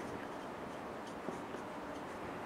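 A felt-tip marker writing on a whiteboard, faint.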